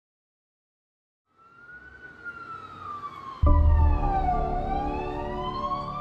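An emergency vehicle siren wailing slowly down and back up, fading in after about a second and a half. At about three and a half seconds a deep boom and a held musical chord come in under it.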